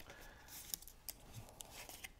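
Faint handling of cardstock: stiff paper being bent along its score lines, with light rustling and a few soft clicks about halfway through.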